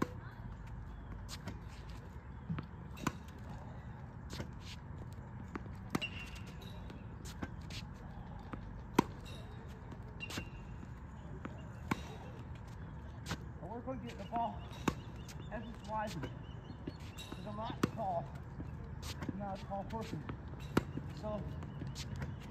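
Tennis practice against a ball machine: short sharp pops of tennis balls being launched, bouncing on the hard court and struck with a racket, recurring about every second or so, with the loudest hit about nine seconds in. A low steady rumble runs underneath.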